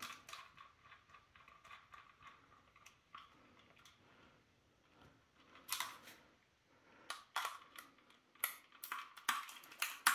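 Screwdriver and plastic airsoft gearbox parts being handled while pistol grip screws are driven in: faint, scattered clicks and light scrapes, sparse in the first half and clustering into a run of sharper clicks in the last three seconds.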